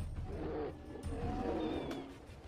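Polar bears roaring at each other, a low rough vocalisation that runs on without a break: a warning to back off.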